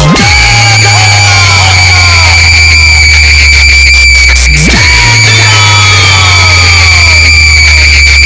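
Indian DJ competition 'vibrate' mix at full volume: a sustained deep bass drone under a steady high-pitched whine, with short falling whistle-like glides repeating over it. About halfway through, the bass sweeps sharply downward and the drone starts again.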